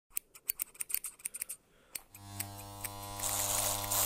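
Scissors snipping in a run of quick, irregular clicks, then an electric hair clipper switching on about two seconds in and running with a steady buzz that grows louder.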